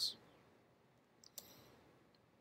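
A single click about one and a half seconds in, from a computer mouse advancing the lecture slide, over otherwise near-silent room tone.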